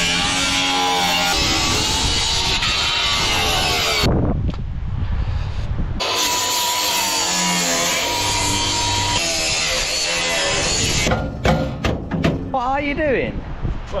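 Cordless reciprocating saw cutting metal, in two long runs: the first ends about four seconds in, and after a short pause the second runs until about eleven seconds in.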